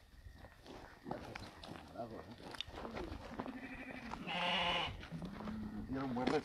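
Sheep bleating: several long, steady-pitched bleats start about halfway in, and the loudest, near the end, has a wavering quaver. Faint footsteps on grass come before them.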